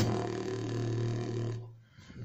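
A beatboxer's low, buzzing throat-bass drone held on one pitch for about a second and a half, then fading out.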